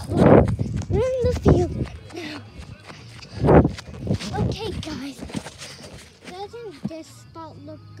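A phone microphone jostled and rubbed as it is carried in motion, with two heavy thumps, one just after the start and one about three and a half seconds in. A young child's voice comes and goes in between without clear words.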